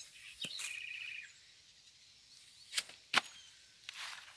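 A few sharp knocks, the loudest two close together near the end, with a short high trill from a bird about a second in.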